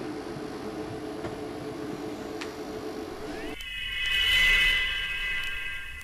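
Steady hum and hiss of a darkened theatre, then about three and a half seconds in a high electronic tone slides up and holds: the opening of the dance's recorded soundtrack.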